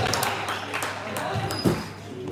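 Basketball game in a gym: voices of players and coaches echo in the hall over court noise. There are sharp clicks, a thud about a second and a half in, and a short high squeak of shoes on the hardwood floor near the end.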